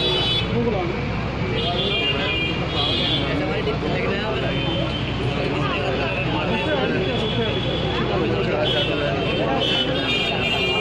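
Crowd of spectators chattering, many voices overlapping at a steady level over a low rumble, with high-pitched tones coming and going now and then.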